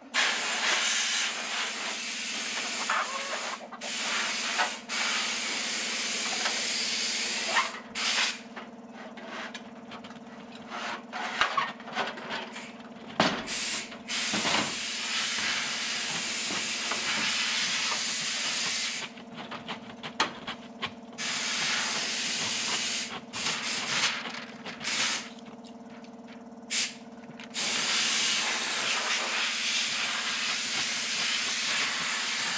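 Water jetting from a pistol-grip garden hose nozzle onto a window, a steady hiss that stops and starts several times as the trigger is released and squeezed again, with small knocks in the pauses. A steady low hum runs underneath.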